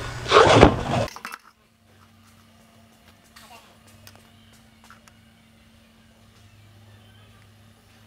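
A man's voice briefly at the start. Then a quiet shop with a faint steady hum and a few faint light clicks of a steel square and pattern being set against a steel box tube for marking.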